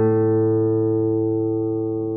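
An A major chord on a classical guitar, ringing out and slowly fading.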